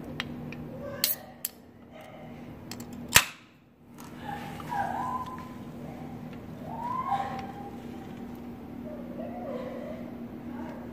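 An aluminium can of Mountain Dew Kickstart being cracked open: a couple of small clicks, then a single sharp pop about three seconds in as the tab breaks the seal.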